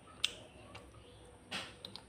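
Faint eating sounds from a crisp jalebi: a sharp click about a quarter-second in, then a short crunchy bite near the end with a few small clicks.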